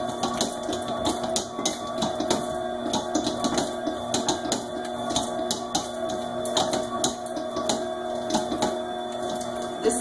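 Commercial stand mixer running at low speed, its dough hook kneading bread dough while softened butter is worked in: a steady motor hum with frequent irregular clicks and knocks.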